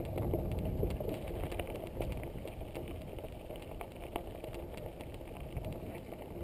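Mountain bike riding over a grassy dirt track: tyre and wind rumble on the camera's microphone, with scattered clicks and knocks as the bike goes over bumps.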